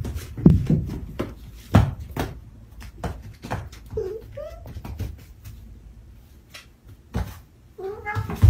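Cats scuffling on a tatami mat: a run of thumps and scrambling knocks in the first two seconds, then a short rising meow about four seconds in.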